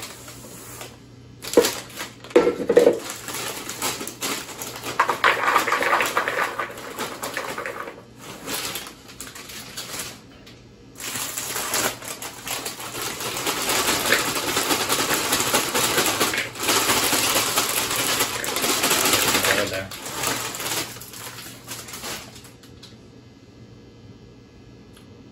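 Crinkly foil snack bags being handled and opened, then Doritos tortilla chips and Smartfood popcorn poured into a mixing bowl: sharp rustles first, a long continuous rustling pour in the middle, and quieter handling of the bowl near the end.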